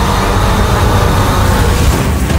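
Incredible Hulk roller coaster train launching up out of its tunnel: a loud, steady rush of the train on the track over a heavy low rumble.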